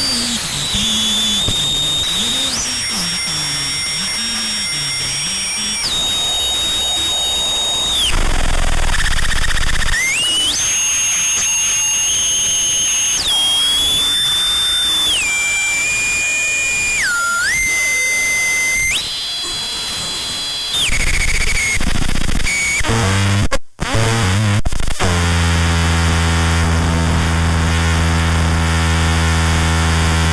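Experimental electronic noise music: a harsh hiss under high, steady whistling tones that jump from one fixed pitch to another every second or two. There is a brief cut-out about three-quarters of the way in, then a low buzzing drone with many overtones near the end.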